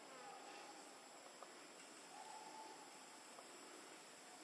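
Near silence: faint outdoor ambience with a steady high hiss and two faint, level whistle-like notes, the second about two seconds in.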